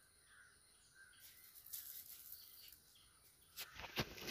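Near silence with faint bird calls in the background. Near the end a sudden rustling, crinkling handling noise starts.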